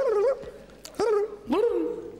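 A man's high, squeaky made-up vocalizations imitating an extraterrestrial's nonsense language: three short calls, each sliding up into a held high note.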